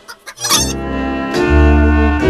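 A cartoon chicken clucking and squawking as a jaunty brass theme tune starts up, the music swelling about one and a half seconds in.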